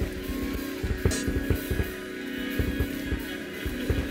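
A live church band playing: irregular drum beats under a steady held chord.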